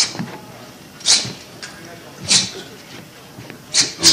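A boxer shadowboxing, with a short sharp hiss at each punch thrown, four of them about a second apart.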